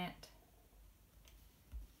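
A few faint clicks and a soft low thump near the end from a hand working an iPad's touchscreen, in an otherwise quiet small room.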